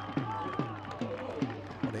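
A man's voice making a run of short sounds, each dropping sharply in pitch, about three a second.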